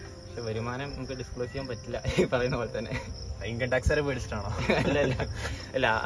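Conversational speech, with crickets chirring steadily at a high pitch behind it.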